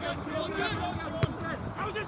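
Voices of spectators talking on the touchline, with a single sharp thud a little past a second in, a football being kicked.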